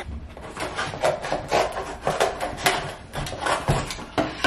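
Scissors cutting open a plastic-wrapped package, with quick irregular snips and crinkling as the wrapping is cut and handled.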